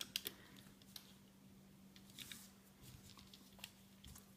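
Near silence with a few faint, scattered clicks and taps of a loom hook and rubber loom bands being handled on a plastic Rainbow Loom, over a faint steady low hum.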